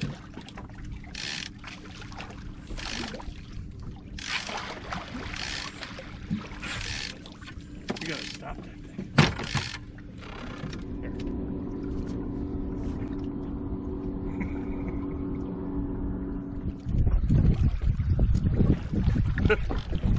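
A boat's motor hums steadily, with several short rushes of noise and a sharp knock about nine seconds in. The hum grows stronger in the middle. Near the end, loud wind buffets the microphone.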